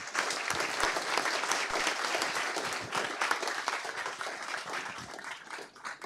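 Audience applauding at the close of a talk, strongest in the first few seconds and tapering off toward the end.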